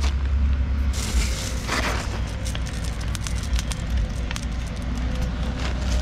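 Crinkling of a plastic bag full of glass beads and short sharp clicks of the beads as they are handled and tossed by hand onto wet concrete, with a rustling burst about two seconds in. A steady low rumble runs underneath.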